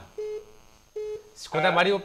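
Two short, steady telephone beeps about a second apart on a phone-in call line, followed by a voice near the end.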